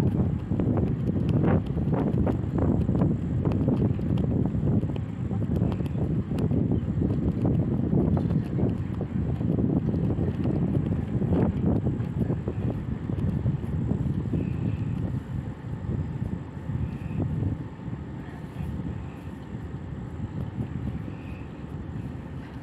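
Heavy construction machinery, most likely the crawler crane's diesel engine, running as a steady low rumble mixed with wind buffeting on the microphone. A few sharp knocks come in the first couple of seconds and again about halfway through, and the rumble eases off toward the end.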